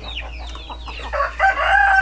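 Chickens clucking with short falling calls, then a rooster crowing, a long held call, from about a second in.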